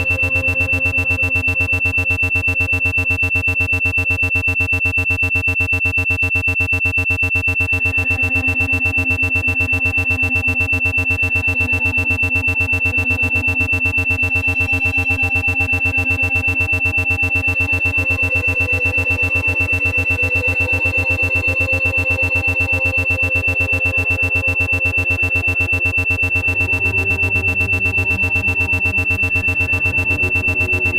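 Brainwave-entrainment track: a steady high tone with rapid, even pulsing, an 8 Hz isochronic and monaural beat meant to induce a relaxed low-alpha state, over slowly shifting ambient synthesizer pads.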